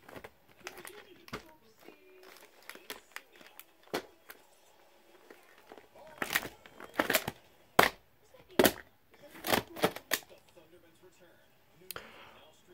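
Plastic VHS clamshell case being handled and turned over by hand: a run of sharp clicks and knocks, loudest and most frequent in the second half.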